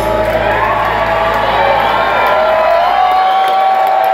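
A live rock band ends a song, the guitars sustaining a held note while the crowd cheers and whoops. The bass drops away about three seconds in, leaving the ringing guitar and the crowd.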